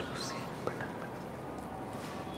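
Quiet room tone with a faint breathy sound and a single small click about two-thirds of a second in.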